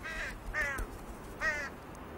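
A crow-like bird cawing three times, each call about a third of a second long.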